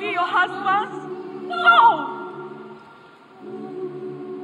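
A woman's voice delivering an anguished lament with wide pitch swings, ending in a long falling cry about two seconds in. Under it an a cappella choir holds a sustained chord, which fades out and comes back in near the end.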